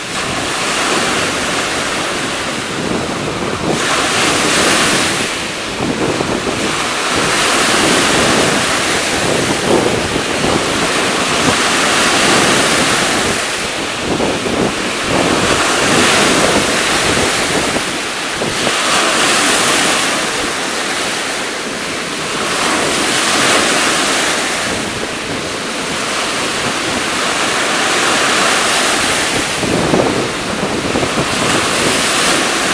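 Lake Erie waves washing onto the beach: a continuous rush of surf that swells and eases every few seconds as each wave comes in.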